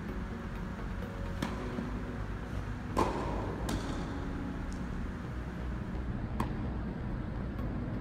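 Tennis ball being struck by rackets and bouncing on an indoor hard court: four sharp pops, about a second and a half, three, three and a half and six and a half seconds in, the one at three seconds the loudest. A steady low hum of the hall runs underneath.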